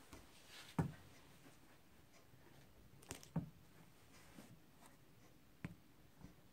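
Wooden-block rubber stamp pressed down on paper and ink pad on a tabletop: four faint, separate taps a second or more apart, two of them close together in the middle.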